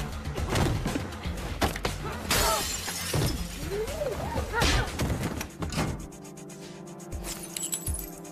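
Fight sound effects over a dramatic score: a run of hits and crashes, the loudest a harsh crash a little over two seconds in, giving way after about six seconds to the steady music alone.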